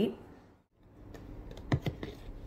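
A few sharp plastic clicks and taps from handling a squeeze tube of gel, two of them close together about three-quarters of the way through, over faint room noise. Speech trails off at the very start.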